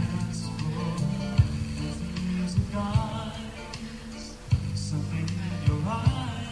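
Live band playing a slow pop ballad, with a male voice singing a few phrases over bass and guitar.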